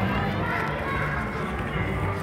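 Cinema auditorium sound: low music from the theatre's speakers, its bass notes held and changing in steps, under indistinct voices.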